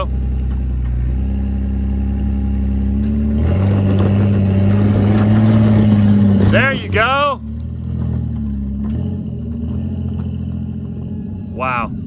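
Jeep LJ's 4.0-litre inline-six engine crawling up a rock ledge at low revs, rising in pitch and getting louder about three and a half seconds in as throttle is added for the climb, then easing off again about seven seconds in.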